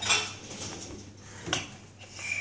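Two light clicks or knocks, one at the start and one about a second and a half in, over a faint steady low hum.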